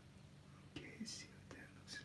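Faint whispering and breathy sounds from a man, a few short hisses with a small click between them, over a steady low electrical hum.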